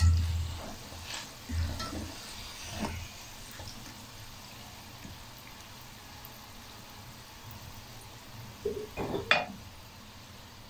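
Potato chips on their second fry in hot ghee in a wok, a faint steady sizzle as they are lifted out with a wire skimmer. A low thump at the start and a few softer knocks in the first three seconds, then a short sharper noise near the end.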